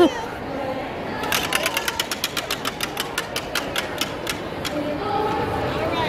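Hand-spun prize wheel, its pointer clicking against the pegs on the rim: a quick run of clicks starts about a second in, then slows and stops after about three seconds as the wheel coasts to rest.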